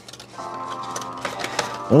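Background music of steady held tones comes in about half a second in, with a few faint clicks from cardboard and plastic packaging being handled.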